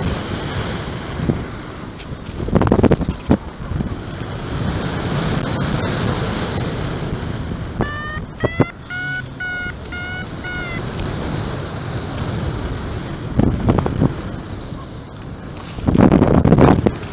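Wind rushing over the microphone in flight under a paraglider, a steady hiss with louder buffeting gusts. Midway comes a short run of high electronic-sounding beeps, stepping slightly up in pitch.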